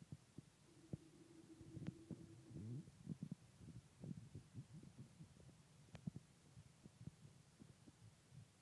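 Near silence with faint low thumps and soft clicks as a baby mouths and licks a foil-wrapped chocolate egg, with a faint steady hum-like tone lasting about two seconds, starting about a second in.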